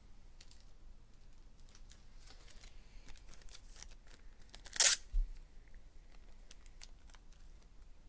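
Hands handling trading cards and their packaging: faint small clicks and rustles, with one short, sharp rasp about five seconds in followed by a softer one with a low thump.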